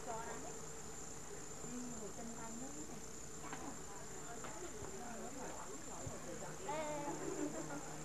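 Indistinct voices of people talking, with a louder stretch near the end, over a steady thin high-pitched whine.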